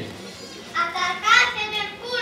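A child's high-pitched voice calling out, starting a little under a second in.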